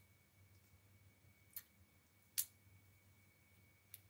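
Near silence: faint room tone with a thin steady high tone and two short clicks, about one and a half and two and a half seconds in, the second louder.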